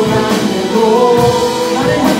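Worship team of young male and female voices singing a Korean praise song together, with band accompaniment including drums; the notes are held and slide between pitches.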